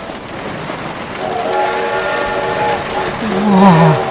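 A rushing rumble, then a loud held chord of horn tones from about a second in, sliding down in pitch near the end.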